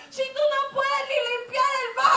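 A woman's voice through a handheld microphone, shouting out high-pitched, chant-like phrases held on a nearly steady pitch, with no words a recogniser could make out.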